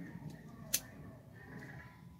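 Quiet handling of a string end between the fingers, with one sharp click a little under a second in.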